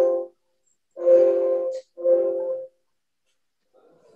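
A steady, horn-like electronic tone sounding three times, each under a second, with short gaps between and nearly silent after about 2.7 seconds in.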